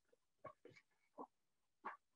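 Near silence, broken by three faint, brief sounds spread across the two seconds.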